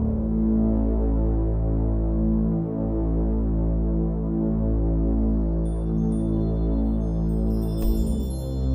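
Ambient meditation music: a low, steady drone of sustained tones that swell and fade slowly. Thin, high bell-like tones come in near the end.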